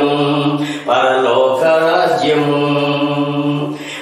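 A man singing a Christian devotional song in long held, chant-like phrases, with short breaks for breath about a second in and near the end.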